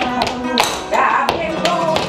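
Live flamenco: a dancer's footwork and castanets making sharp, irregular taps over flamenco guitar, with a singing voice.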